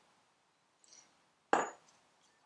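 A glass oil cruet set down on a countertop: one sharp knock about a second and a half in, fading quickly.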